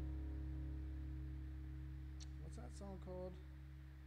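An acoustic guitar chord ringing out and slowly dying away, with a steady low hum underneath. A short voice sound comes about three seconds in.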